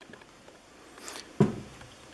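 Quiet room tone, broken by a soft brief hiss and then one short, sharp click or knock.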